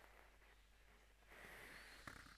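Near silence: faint room tone with a low steady hum and a soft hiss that swells briefly in the second half.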